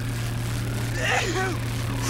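Electric hum of an X-ray body scanner running: a steady low buzz with a hiss over it. A brief vocal sound about a second in.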